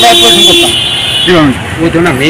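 Men talking outdoors, with one steady pitched tone held for under a second near the start.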